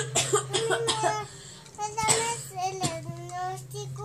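A woman coughing, put-on coughs as the pretend-sick patient in a children's doctor game: one short burst right at the start and another about two seconds in, with a small child's voice between them.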